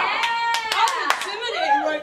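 A man shouts a long, drawn-out "Yeah!", followed by a few sharp hand claps about a second in, amid other voices.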